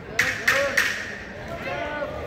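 Three quick, sharp hissing bursts about a third of a second apart, in time with punches thrown in an amateur boxing bout. A hall crowd murmurs behind them.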